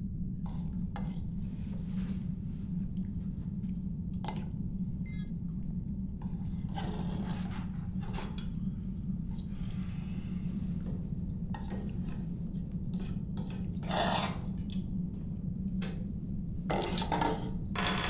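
Spoons clinking and scraping against metal bowls as several people eat, scattered light clinks with a louder cluster near the end. Under them runs a steady low hum.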